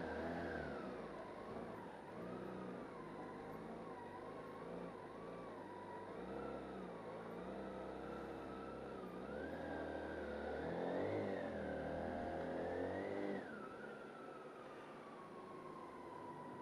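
BMW K1600GT's inline six-cylinder engine at low revs as the bike rolls slowly, its pitch rising and falling with small throttle changes. The revs climb a little near the end, then fall back as the throttle closes about three seconds before the end.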